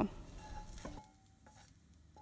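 Near silence, with a few faint soft sounds in the first second as the last fried onion slices drop into a glass bowl.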